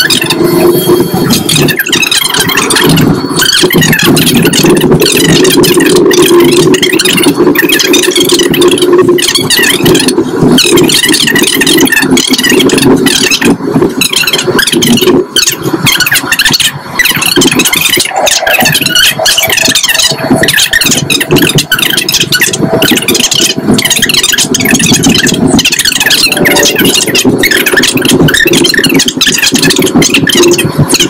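Jet airliner cabin noise heard from a business-class seat: a steady, loud rush of engines and airflow.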